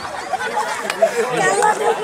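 Talking voices, with a single sharp click just before a second in.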